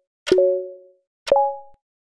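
Countdown timer sound effect: two short pitched plonks about a second apart, each a click with a quickly fading two-note ring. The second is higher and shorter, marking the end of the count.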